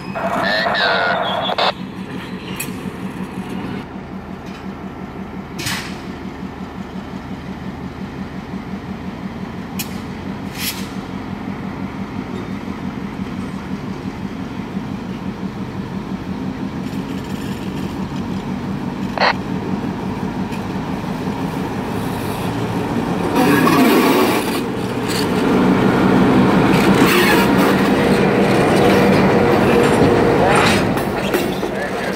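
EMD GP38-2 diesel-electric locomotive's 16-cylinder two-stroke diesel running as the locomotive rolls slowly with tank cars in tow, with a few sharp clicks. It gets louder over the last several seconds as it comes up close and passes.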